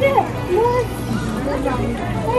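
Children's voices chattering over background music.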